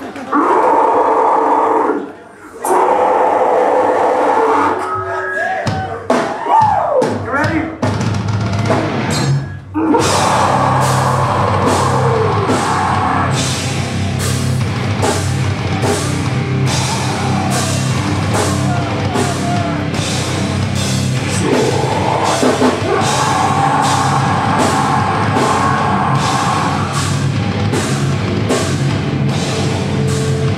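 Deathcore band playing live, loud: a shouted vocal over guitars, a brief break with ringing, bending guitar notes, then about ten seconds in the full band comes in with distorted guitars and pounding drums and keeps going.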